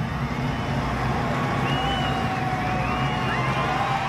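NASCAR stock car V8 engines running on track: a steady low drone with drawn-out engine notes that rise and fall as cars go by.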